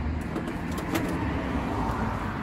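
Steady low rumble of a motor vehicle, swelling slightly near the end, with a few faint light clicks.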